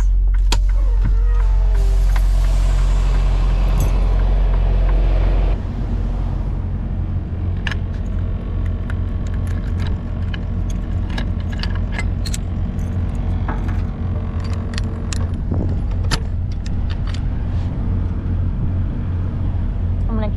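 Semi truck's diesel engine idling, loud and steady for the first five seconds or so; after a sudden change about five and a half seconds in, the idle goes on lower under many sharp clicks and jangling as keys work a padlock on the trailer's rear door latch.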